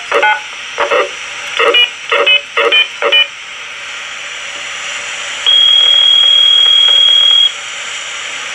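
A cordless phone's voice-scrambled transmission heard through a scanner's speaker, with a steady hiss. A number is dialed in a quick series of about eight short keypad beeps. A few seconds later comes one steady high tone about two seconds long.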